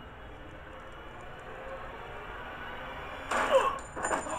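Quiet, steady background noise from the episode's soundtrack, then near the end a brief loud scream whose pitch falls.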